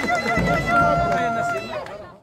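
A high, rapidly warbling trilled call, typical of women's ululation (youyou), over crowd talk. It settles into one held note about a third of the way in, then fades near the end.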